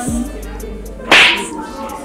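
A single sharp, loud slap-crack about a second in: an open-hand slap landing on a woman's face.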